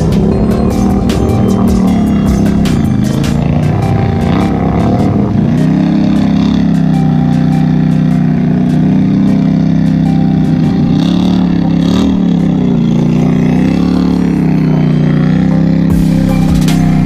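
ATV engine working hard under load as the quad churns through a deep mud hole, its pitch rising and falling every second or two as the throttle is worked. Music plays over it.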